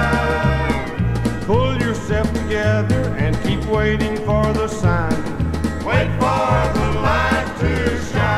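Country gospel record playing an instrumental passage: a bass steps through notes about twice a second under a lead instrument playing sliding, bending notes.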